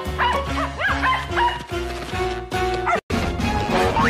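A cartoon dog's short yips and barks, one after another, over background music with held notes. Everything cuts out for a split second about three seconds in.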